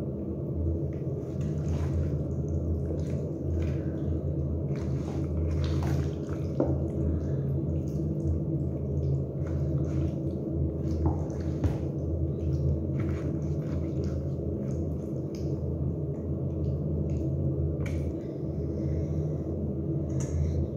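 Wet squelching of raw marinated chicken pieces and vegetables being stirred with a silicone spatula in a plastic bowl, with scattered short clicks and taps of the spatula against the bowl. A steady low hum runs underneath.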